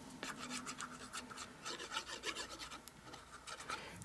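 Faint, quick scratchy rubbing on paper: a die-cut cardstock bear being handled and turned over while a Tombow liquid glue applicator is rubbed over its back.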